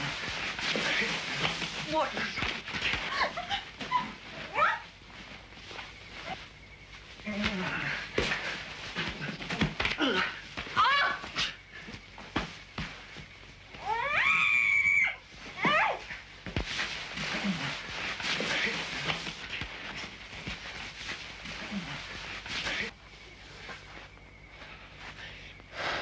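A man and a woman struggling on dusty ground: scuffling with grunts, gasps and short cries, and one loud, sharp cry about fourteen seconds in.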